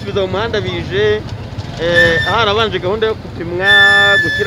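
A person talking, over a steady low rumble of street and traffic noise.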